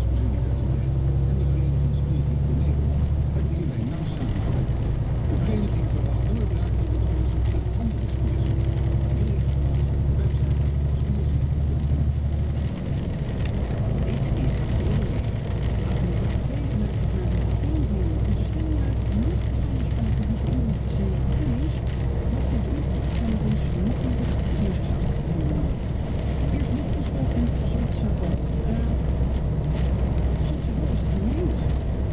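Truck engine and road noise heard inside the cab: a loud, steady low drone that steps to a different pitch about four seconds in and again about thirteen seconds in.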